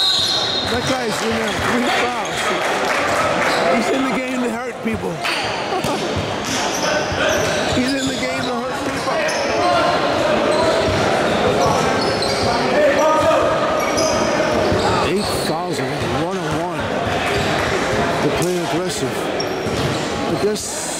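Basketball game sounds in a large echoing gym: a ball bouncing on the hardwood court amid players' and onlookers' shouts and chatter.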